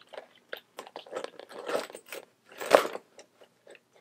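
Coated canvas of a Louis Vuitton Neverfull BB and a Zippy Wallet rustling, creaking and scraping as the full-size wallet is forced into the small tote and will not fit, with scattered small clicks. The loudest rustle comes about three-quarters of the way through.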